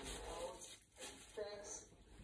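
A person's voice speaking faintly, the words not clear enough to make out.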